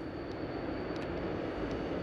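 Steady low outdoor rumble with a faint high whine running through it.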